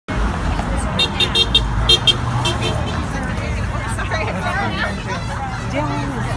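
Street traffic beside a march: a car passes with a low rumble while a quick series of short, high-pitched toots sounds in the first couple of seconds, then marchers' voices chatter over the traffic.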